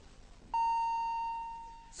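A single clear chime tone that comes in sharply about half a second in and fades away over about a second and a half. It is the quiz board's cue sounding as a word card is revealed.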